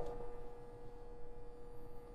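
Quiet room tone with a faint, steady hum held at one pitch.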